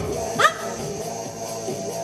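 Background workout music playing steadily, with one short, sharp shouted 'Hop!' about half a second in, the cue for a squat repetition.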